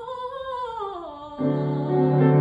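A classical soprano voice singing a line that steps down in pitch, with little else under it. About one and a half seconds in, a full, sustained piano chord comes in suddenly and louder.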